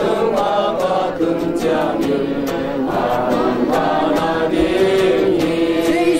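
A group of children and adults singing together from books, a hymn-like song in steady voices.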